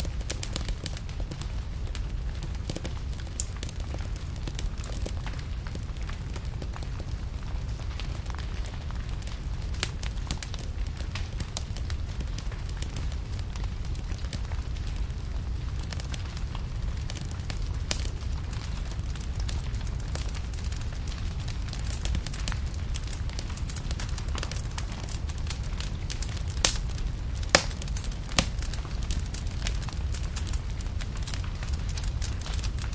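Crackling fire: scattered pops and crackles over a steady low rumble, with a few sharper, louder pops near the end.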